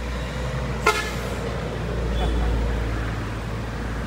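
A vehicle horn toots once, briefly, about a second in, over a steady low rumble of road traffic.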